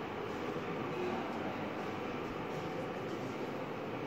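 Steady rumbling background noise of a large indoor hall, with no distinct events.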